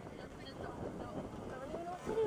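Low, even wind noise on the microphone and outdoor rumble, with faint distant voices near the end.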